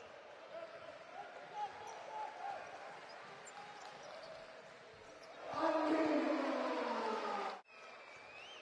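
Basketball game sound in an arena: a ball dribbling on the hardwood court under crowd murmur. About five and a half seconds in, the crowd noise swells loudly for two seconds and then cuts off abruptly.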